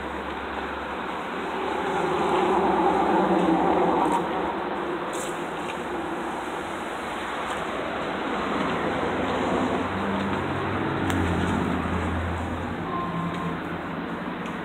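Road traffic noise, swelling louder for a couple of seconds about two seconds in as a vehicle goes by, with a lower hum later on.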